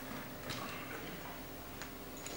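A few light knocks and clicks over a faint, steady low hum, as electric guitars are set down on a carpeted floor once the song has ended.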